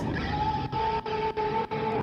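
Motorbike engines revving, with one engine holding a steady pitch for about a second and a half.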